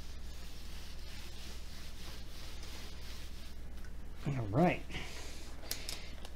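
Faint, soft rustling of a diamond painting canvas's plastic cover as a ruler is pressed and slid across it. A short hummed vocal sound comes about four and a half seconds in.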